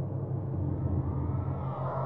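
Synthesized ambient drone carrying a low tone that pulses on and off about six times a second, a 6 Hz isochronic beat. A deep rumble swells under it through the middle, and a brighter wash rises near the end.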